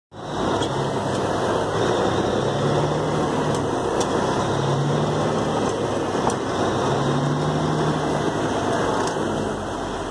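1964 Peterbilt 351 truck's engine running, heard inside the cab, with a low hum that swells three times for about a second each. A few sharp clicks come through as the driver works the twin-stick main and auxiliary gear levers.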